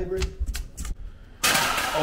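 A Doberman's claws clicking a few times on a hard floor, then a loud rustling clatter near the end as something gets knocked.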